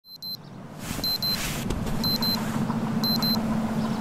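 Electronic alarm clock beeping, a quick pair of high beeps about once a second, over a low steady hum that grows louder after the first second.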